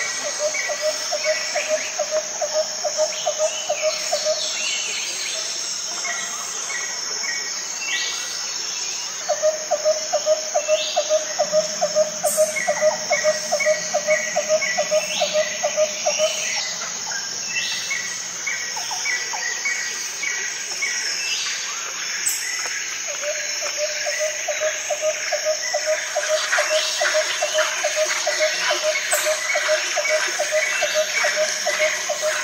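Insects and birds calling together: a steady high insect drone runs throughout, over short chirps and brief upward-sweeping bird calls. Three long runs of rapid low pulsed notes, about four or five a second, come at the start, in the middle and from about two-thirds of the way in.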